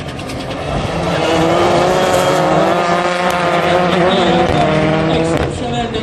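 Rallycross Supercars racing, their engines' steady note swelling from about a second in and easing off near the end.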